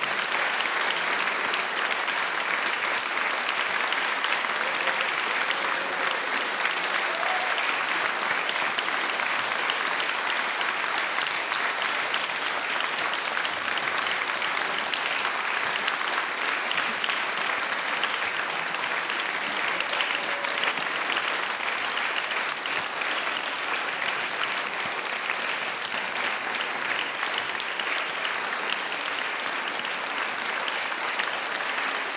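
Audience applauding in a steady, unbroken round of clapping.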